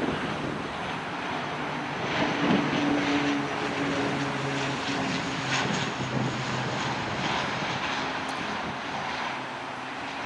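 Dornier 328's Pratt & Whitney Canada PW119 turboprops on landing approach with the gear down: a steady propeller drone with low humming tones, loudest about two to three seconds in and then slowly easing.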